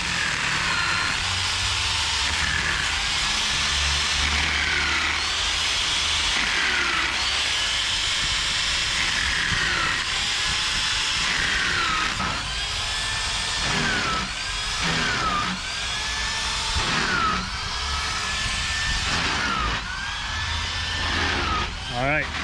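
Hand-held electric drill boring a long bit up into a wooden hull plank. Its motor whine repeatedly dips in pitch as the bit bites into the wood, then recovers.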